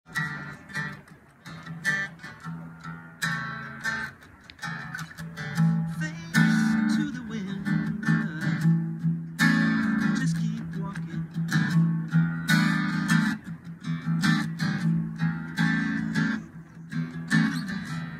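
Acoustic guitar strummed, chords ringing in a steady rhythm.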